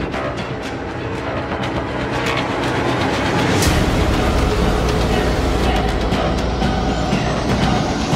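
Horror film sound design: a dense, rumbling drone with one sharp hit a little past halfway, after which the low rumble grows heavier. A thin high tone starts rising slowly near the end.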